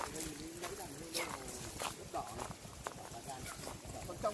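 Footsteps of several people walking over dry leaf litter and twigs, with irregular sharp snaps and rustles. Faint voices talk underneath.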